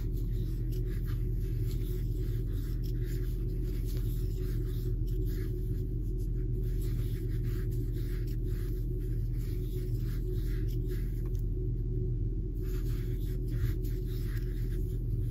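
Steady low hum, with faint light rustles and small clicks from a crochet hook working mercerized cotton yarn into single crochet stitches.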